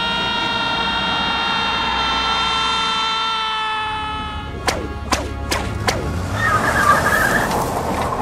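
Trailer soundtrack: a long held tone that sinks slowly in pitch for about four seconds, then four sharp hits in quick succession, then a rough rushing noise like a vehicle speeding past near the end.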